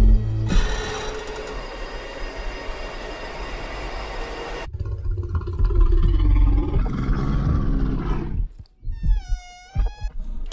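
Trailer sound design over music: a loud rushing burst that cuts off sharply a little under five seconds in, then a low animal growl from the bear for about three seconds. Near the end a short pitched tone dips and rises.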